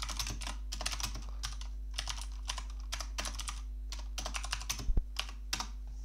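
Typing on a computer keyboard: several quick bursts of keystrokes with short pauses between them, over a faint steady low hum.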